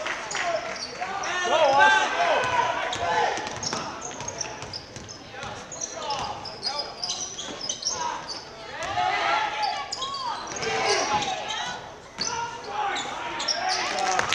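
Basketball game in a gym: a ball bouncing on the hardwood court and sneakers squeaking in short, high-pitched chirps, over voices of players and spectators.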